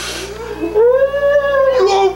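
A person's long wailing cry: one drawn-out note that rises and falls, after a short breathy hiss at the start.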